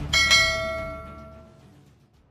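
A bell-ding sound effect for clicking a notification bell icon: two quick strikes that ring out and fade away over about a second and a half.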